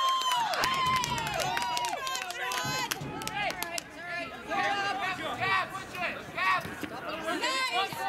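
Players and spectators shouting and calling out across the field, with several long, drawn-out calls in the first two seconds and overlapping voices after.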